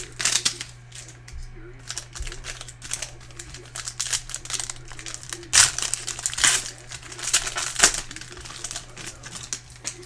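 Foil trading-card pack wrapper crinkling and crackling as it is torn open and pulled off the cards, in a run of short irregular crackles.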